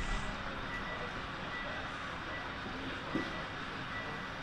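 HO scale freight cars rolling steadily past on the track, a continuous rolling noise in a large hall, with a faint broken high tone and a small knock about three seconds in.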